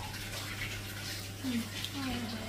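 Faint rubbing and rustling of a paperboard ice-cream pint being turned over in the hands, over a steady low hum, with a short murmured "mm" near the end.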